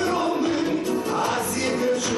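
Male singer singing a Romanian Christmas song live into a handheld microphone, with a live band and choir-like voices behind him.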